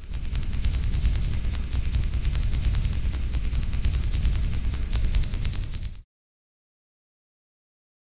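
Logo-ident sound effect: a loud, deep rumble laced with rapid crackling clicks that cuts off abruptly about six seconds in.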